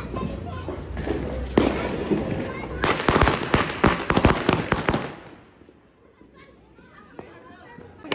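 Firecrackers going off: a fast string of sharp cracks, loudest about three seconds in and lasting around two seconds, over a background of distant fireworks and voices.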